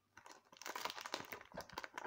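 Crinkling of a foil trading-card booster pack wrapper being handled, a run of quick irregular crackles starting about half a second in.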